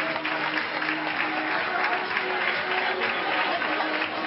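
Audience applauding, with many hands clapping steadily, over music.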